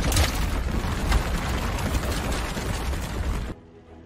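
Rolling-boulder sound effect: a loud crash, then a continuous heavy rumble with rattling debris. It cuts off suddenly about three and a half seconds in, leaving quiet background music.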